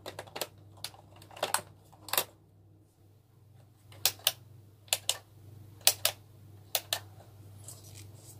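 Plastic plug being handled and pushed into a multi-socket power strip, with a few clattering clicks, then the strip's rocker switch clicked on and off four times, a pair of sharp clicks about once a second, switching the LED bulb in the newly wired lamp holder on and off as a test.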